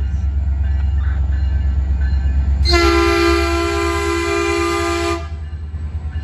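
Caltrain MP36 diesel-electric locomotive approaching with a steady low rumble, then sounding its air horn in one long chord-like blast of about two and a half seconds, starting a little before halfway through.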